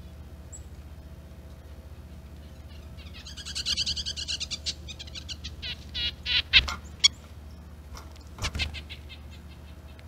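Small bird calling at a backyard feeder: a rapid run of high notes about three seconds in, then scattered sharp calls with a couple of loud clicks, and a short burst of calls near the end, over a steady low hum.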